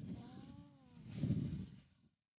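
A single short call, about half a second long, that rises and falls in pitch. It sits in a low rumbling noise that swells again in the second half.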